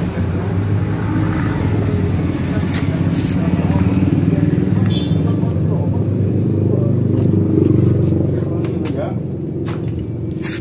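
Indistinct talking with a steady low engine drone underneath.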